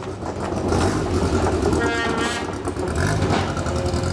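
Škoda rally car's engine revving as the car drives down off a wooden start ramp, with a voice talking over it.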